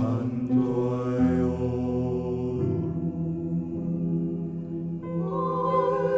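Slow chanted vocal music: voices hold long, steady notes, and the harmony shifts a few times.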